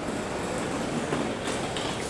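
A train's steady rumble and clatter heard inside a railway station hall, with a few faint ticks about halfway through.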